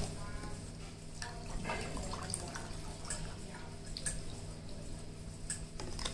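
Water poured from a plastic bottle into a glass, faint trickling and dripping.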